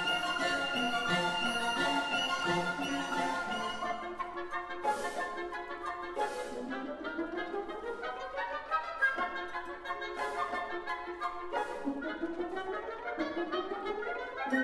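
Symphony orchestra playing classical music: strings and woodwinds hold sustained notes at first, then the texture moves, with a quick rising run sweeping upward about halfway through and again near the end.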